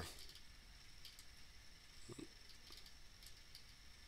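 Near silence: room tone with a faint, steady high-pitched tone and a few faint clicks.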